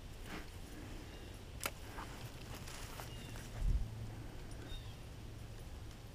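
Quiet lakeside ambience with a few light clicks and rustles, a dull low thump a little past halfway, and a few faint short chirps.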